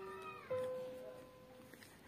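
Soft background music of plucked guitar notes: one note rings out and stops, and a new note sounds about half a second in and fades away.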